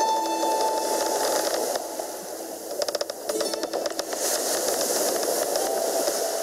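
Film soundtrack opening: a ringing musical note fading out over a steady rushing hiss, with a brief rattle of clicks about three seconds in.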